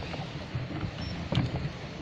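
Pedal boat being pedalled on a lake: a steady low rumble of wind and water on the microphone, with one sharp knock about one and a half seconds in from a boot kicking the bottom of the boat.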